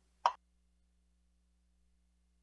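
A single brief pop on the meeting's audio line about a quarter second in, then dead silence.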